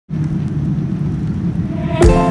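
Airliner cabin noise in flight: a steady low rumble of the engines and airflow heard from a window seat.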